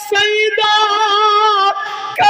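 A man singing a manqabat, a devotional praise poem, in a high voice with no instruments. He holds one long note with a slight waver, then breaks off briefly near the end.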